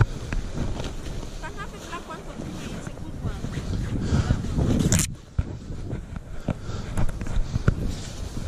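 Wind buffeting the microphone while clothes are handled: fleece and jacket fabric rustling, with a sharp scrape of cloth against the microphone about five seconds in and a few small clicks near the end.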